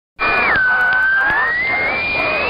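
A loud high whistling tone on an AM radio recording. It drops sharply in pitch about half a second in, then slowly glides back upward.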